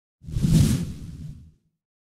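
A whoosh sound effect with a deep low boom under it. It swells in quickly about a quarter-second in and fades away by about a second and a half.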